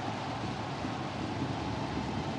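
Football stadium crowd cheering a home goal: a steady wash of many voices and clapping.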